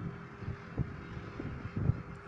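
Steady low background hum, with a few soft low thumps about a second in and near the end.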